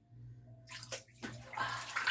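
Water moving in a filled bathtub as someone shifts in it: a noisy wash of water that starts under a second in and grows louder toward the end.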